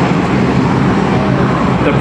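Jet engine noise of an F-117 Nighthawk's twin turbofans as the aircraft rolls along the runway: a loud, steady rush of noise.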